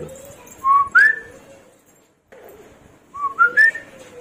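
A person whistling two short phrases of clear notes that rise in pitch: first two notes sweeping upward, then a phrase climbing in three steps.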